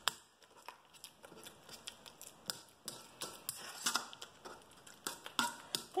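A utensil mashing and stirring banana and peanut butter in a stainless steel mixing bowl, with quiet, irregular clicks and taps of the utensil against the metal.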